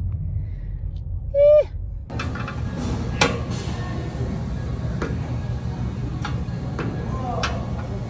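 Low road rumble inside a car, with one short, loud hummed vocal sound about a second and a half in. After two seconds this gives way to gym room noise with several sharp knocks, weight plates on a plate-loaded hip-thrust machine knocking during reps.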